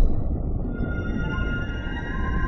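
Television channel ident soundtrack: a low rumble, with steady high synthesizer tones swelling in just under a second in.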